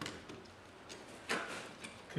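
Small clicks and scrapes of hands working electrical wires into a plastic flush-mounted socket box: a few separate ticks, the loudest a little past halfway.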